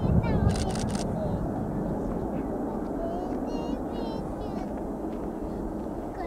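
Antonov An-124's four turbofan engines heard from a distance as a steady low rumble, slowly fading as the freighter climbs away after takeoff. A brief low thump comes just after the start.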